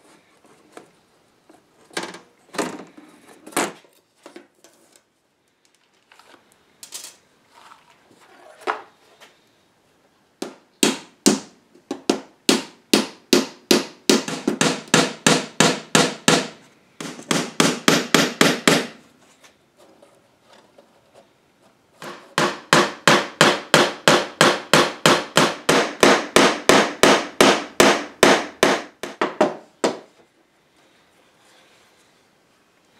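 Small hammer tapping brads into a thin wooden strip on the back of a mirror frame. A few scattered knocks come first, then two long runs of quick, light, evenly spaced strikes, about four or five a second.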